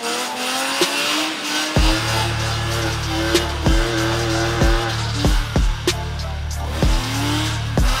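A music track with a deep bass beat that comes in about two seconds in, laid over a BMW E36's engine held high in the revs with its tyres squealing as it drifts.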